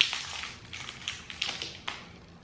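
Foil-and-plastic wrapper of a snack-size Kit Kat crinkling and tearing as it is opened by hand: a run of sharp crackles, loudest right at the start.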